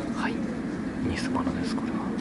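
Steady low hum of indoor ambience, with faint voices in the background.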